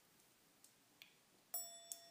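A meditation bell struck once about one and a half seconds in, with a second light hit just after, then ringing on in a long, steady tone with several overtones. It marks the end of the silent meditation period.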